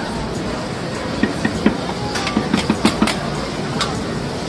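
Busy street background noise with an irregular run of sharp clacks and clicks, about a dozen, most of them in the second and third seconds.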